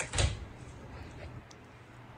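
A short dull thump just after the start, then faint room tone.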